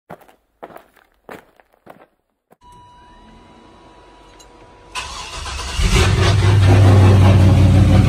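A few short clicks, then a car engine starting about five seconds in and running loudly at a steady low pitch.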